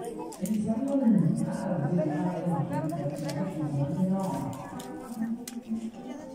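People talking: voices chattering among a gathered group, with a few faint light clicks.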